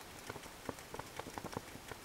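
Faint, irregular patter of rain: scattered light drops ticking on a surface over a soft hiss.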